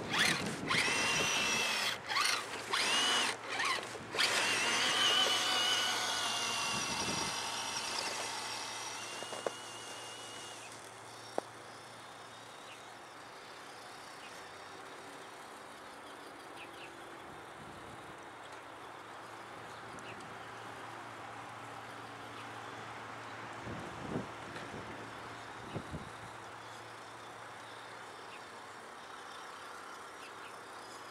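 Electric motor and gear drive of an Axial RC Jeep Cherokee crawler whining as it is driven over crusted snow, its pitch rising and falling with the throttle and cutting out several times in the first few seconds. After about ten seconds the whine falls away to a faint sound as the truck moves off.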